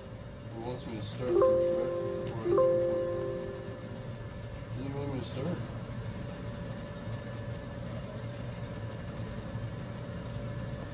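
Two electronic chimes about a second apart, each a short held tone that fades out, over a low steady hum.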